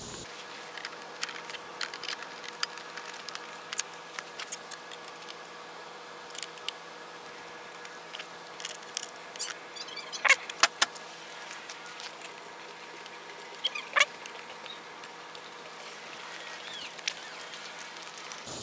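Scattered light clicks and knocks of a Ninebot mini battery pack's plastic casing being handled and pressed into place in a Segway miniPRO's frame, with a few sharper knocks about ten and fourteen seconds in, over a steady faint hum.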